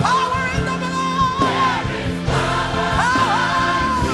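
Church gospel choir singing with instrumental accompaniment, the voices holding long, wavering notes that break and restart about a second and a half in and again around three seconds in.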